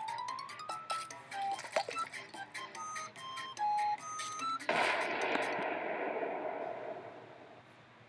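Added cartoon sound effects: a rising tone under fast ticking, then a run of short beeps at changing pitches. About four and a half seconds in comes a sudden explosion that dies away over about three seconds.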